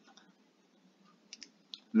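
A few faint, short clicks of a pen stylus tapping a tablet screen while a line is drawn, over quiet room tone.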